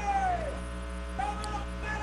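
A high-pitched, drawn-out voice-like call that falls in pitch and fades within the first half second, then a fainter, steadier call from just past the middle to the end, over a low steady electrical hum.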